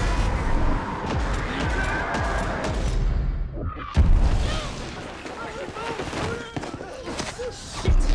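Film battle soundtrack of score and battle noise with booms and gunfire. About three seconds in the sound goes muffled, its high end sweeping away. A heavy boom hits about four seconds in, and another thump comes near the end over a quieter, duller mix.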